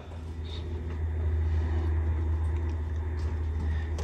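A 1966 MGB being rolled slowly by hand in gear, making a steady low rumble, so that the engine turns toward top dead centre.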